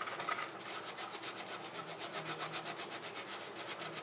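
A wet, soapy foundation makeup brush being scrubbed quickly back and forth across the ridged palm of a rubber kitchen glove, a fairly faint, steady rubbing of about seven strokes a second.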